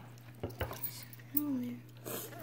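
Faint clicks and light knocks of a plastic cup being handled. About two thirds of the way through, a child briefly makes a short hummed sound that falls slightly in pitch.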